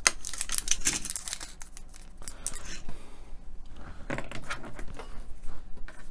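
A small plastic packet of tiny model screws being cut open with a craft knife, with crinkling and a run of small clicks and taps as the screws are tipped out onto a cutting mat. The clicks come thickest in the first three seconds, then thin out before more come near the end.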